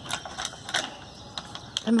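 A few irregular short clicks and taps, then a person's voice starting at the very end.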